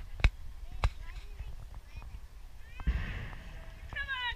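Two sharp knocks about half a second apart near the start, then a brief shout and a rush of noise about three seconds in.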